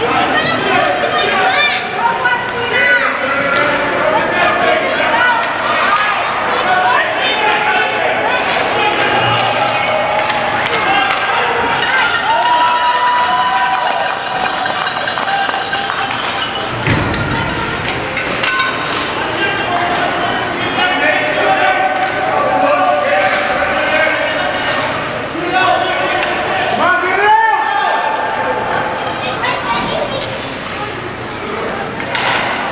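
Spectators' voices in an ice hockey arena, several people calling out and talking over one another, with occasional clacks of sticks and puck on the ice.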